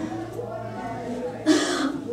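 A woman coughs once, sharply, about one and a half seconds in, after a low murmur of voice.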